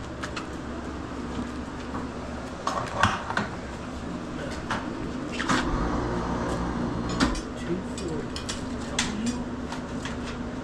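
Scattered metal clanks and knocks from a hanging deer carcass's hook and trolley being pushed along an overhead meat rail, over a steady low hum.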